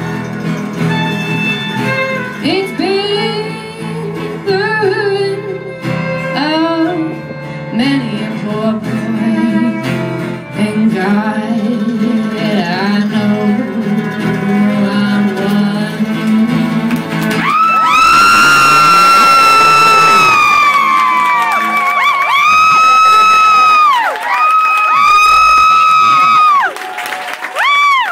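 Live folk band playing with acoustic guitar, fiddle, mandolin, electric bass and drums. About two thirds of the way through, the low end drops away and a high melody carries on in a series of long held notes that swell and stop.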